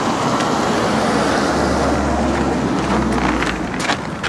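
Steady street traffic noise, with a deeper rumble through the middle as a vehicle goes by and a few short clicks near the end.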